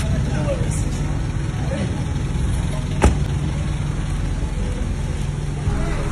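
A car engine idling with a steady low hum, and a single sharp knock about three seconds in.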